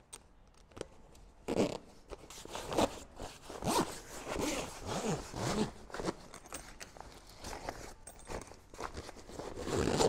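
Zipper on a canvas Bimini storage cover being drawn closed in a run of short pulls, starting about a second and a half in.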